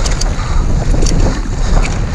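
Wind buffeting a GoPro on a mountain bike riding fast down a dirt trail: a loud, steady low rumble of wind and tyres, with scattered sharp clicks and rattles from the bike and trail.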